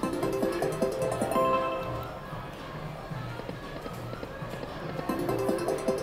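Video slot machine (Lock It Link 'Cats, Hats & More Bats') playing its electronic reel-spin music and chimes, with a brighter run of chime notes near the end as the reels land on a small win.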